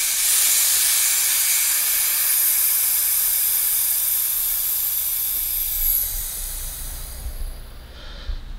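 Compressed air hissing from a Porter-Cable air compressor's pressure regulator as its knob is backed way down, bleeding off the regulated pressure. The steady hiss weakens and dies away near the end.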